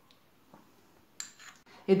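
A few faint clicks, then a brief scrape about a second in, of a utensil against a small glass bowl as soft cream cheese is scooped out of it.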